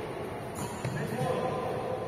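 A badminton racket strikes the shuttlecock with a sharp hit about half a second in, during a rally in a large hall, with a person's voice over it.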